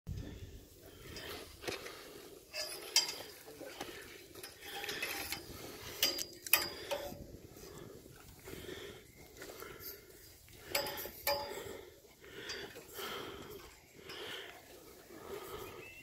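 Hands and shoes striking the rungs of a metal ladder as a hiker climbs it: irregular clanks and knocks, a few of the sharper ones ringing briefly.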